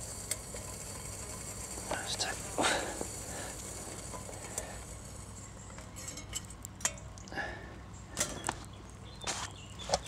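Small wood fire crackling in a folding twig stove, with irregular sharp pops and light knocks over a faint steady low hum.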